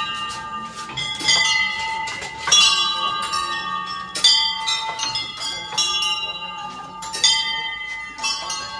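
Metal bells on large prayer wheels ringing as the wheels are turned, a struck ring about once a second with the tones of several bells overlapping.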